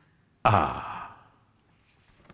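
A man's voice: one short, breathy vocal sound that starts suddenly about half a second in, falls in pitch like a sigh and dies away within about half a second.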